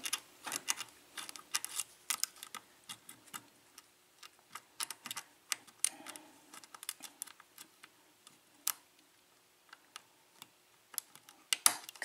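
Light, irregular metallic clicks and ticks of a hook pick and tension wrench working the pins of an ISEO pin-tumbler euro cylinder during single-pin picking. The clicks come in quick runs at first, thin out in the middle and bunch up again near the end.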